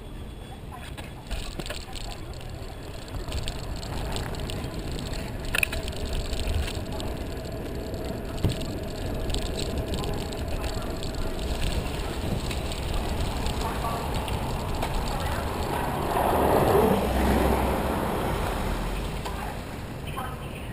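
Bike-share bicycle riding on city pavement: wind rumbling on the bike-mounted microphone and tyre and road noise, with scattered rattles and clicks from the bike. A louder rush builds about three-quarters of the way through and then fades.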